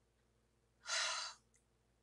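One short, breathy sigh from a woman, about a second in, lasting about half a second.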